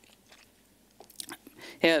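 A pause in a man's talk: quiet room tone, then a few faint short clicks in the second half, before he says "yeah" near the end.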